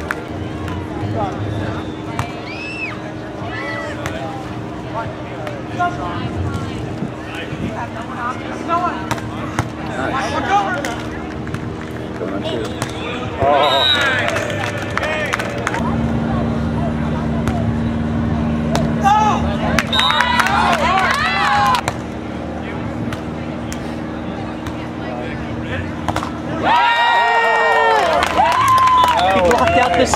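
People's voices calling out and talking at a beach volleyball match, in clusters with gaps between them, over a steady low hum. Scattered sharp knocks run through.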